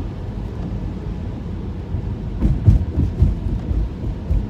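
Tyre and road rumble heard inside the cabin of a Tesla driving on a wet street, with a few heavier low thumps a little past halfway.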